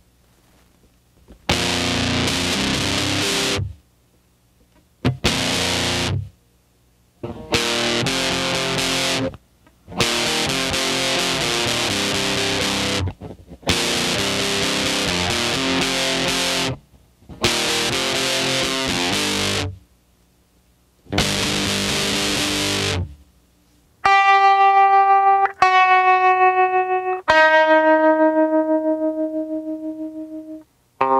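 Electric guitar tuned to C standard, playing through distortion: heavy chords in blocks of a couple of seconds, each stopped dead, with short silences between. Over the last six seconds it plays single sustained notes that pulse in volume from a tremolo effect, stepping down in pitch.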